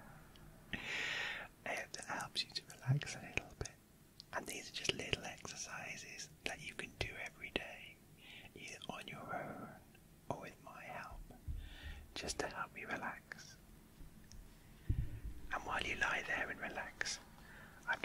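A man whispering close to the microphones.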